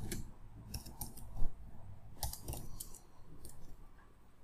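Computer keyboard keys being typed: a run of short, irregular clicks, one louder than the rest about a second and a half in.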